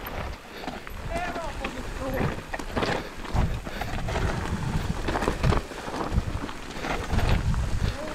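Mountain bike riding down a stony dirt singletrack: tyres on dirt and loose stones, with the bike clattering and rattling irregularly over the bumps over a constant low rumble. A short voice sound comes about a second in.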